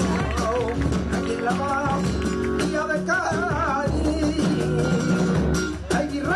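Live flamenco music: a singer's wavering, ornamented voice over guitar accompaniment.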